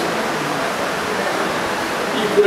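A steady, even rushing noise, like hiss, with no voice in it. It sets in as the speech stops and ends as the speech resumes.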